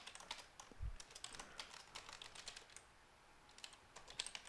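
Faint typing on a computer keyboard: a quick run of keystroke clicks that thins out briefly about three seconds in, with one soft low thump just under a second in.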